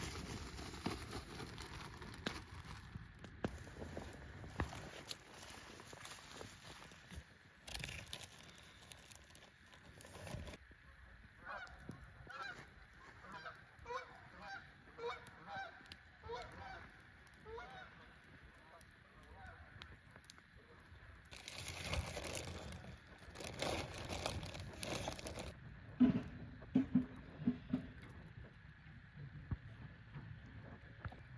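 Geese honking: a run of short, repeated calls in the middle of the stretch, with broad rustling noise before and after.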